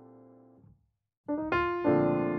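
Background piano music. A held chord fades away, there is a short moment of silence, and then new piano notes strike up about a second and a quarter in.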